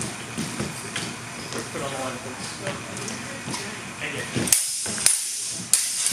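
Low voices in a hall, then, near the end, three sharp clashes of longswords about half a second apart as two fencers exchange blows.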